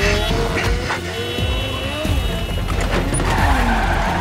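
Action-film sound mix of car engines revving, their pitch rising in several glides, with tyres skidding, over a music score.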